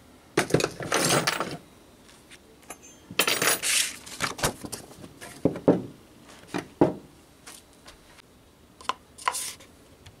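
Scattered light knocks and clinks of small metal objects being picked up and set down on a workbench, including an aluminium mould with copper commutator pieces, with a couple of longer clattering stretches about half a second and three seconds in.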